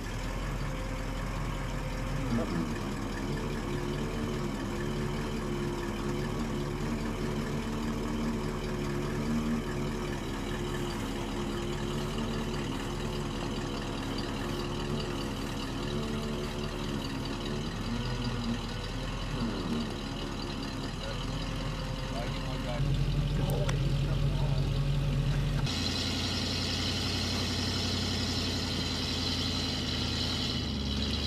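Utility bucket truck's engine running steadily while the aerial boom and bucket are worked. The sound changes abruptly about 23 seconds in, with a louder low hum, and again about 26 seconds in, where it turns brighter and hissier.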